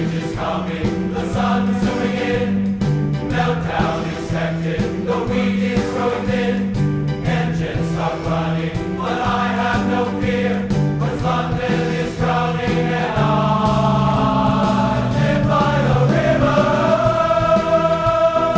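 Large men's chorus singing. In the second half it settles into a long held chord that swells slightly toward the end.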